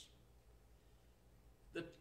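Near silence: room tone with a faint steady low hum, then a man's voice starts a word just before the end.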